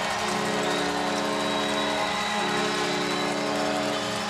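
Arena goal horn blaring one long, steady chord, with the crowd cheering underneath: the signal for a home-team goal.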